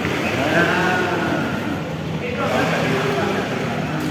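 Indistinct voices, likely a child's among them, carrying across a swimming pool over a steady wash of splashing water.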